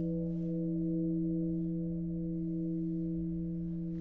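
Japanese temple bell ringing on after being struck with a wooden striker, its deep hum and several higher tones held steady and slowly dying away, one overtone pulsing.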